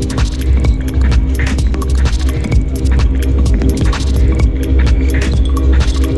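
Electronic sound-design score with a deep, continuous throbbing bass drone under steady held tones, scattered with many sharp clicks and ticks.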